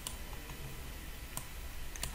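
A few faint, isolated clicks of a computer mouse button, spaced irregularly, over a steady low electrical hum.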